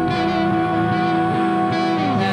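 Indie rock band playing a slow passage, with long sustained guitar notes and cymbals swelled by the drummer's soft felt mallets.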